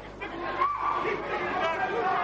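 Indistinct talking and chatter in a large hall: voices murmuring over a steady crowd background.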